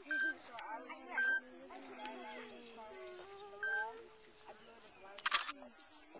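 A whistle blown in three short toots, each a single steady high note: one at the start, one about a second in, and one just before four seconds. A short, loud rush of noise follows about five seconds in.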